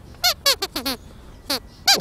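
A glove-puppet dog's squeaker voice (Sweep's), squeaking in quick short bursts. There are about seven high squeaks, each falling in pitch, coming in two clusters.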